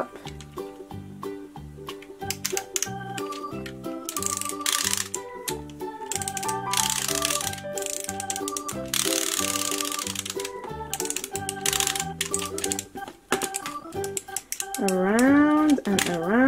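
Upbeat background music with a steady beat, over quick repeated clicking of a wind-up toy's winder being turned.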